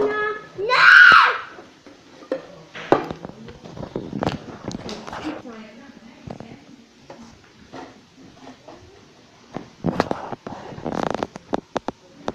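Pages of a comic album being handled and turned: paper rustles and scattered light taps, with a loud burst about a second in and a denser run of rustling about ten seconds in.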